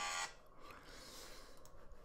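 A steady background sound cuts off about a quarter of a second in, leaving near silence with faint hiss: room tone between sentences of narration.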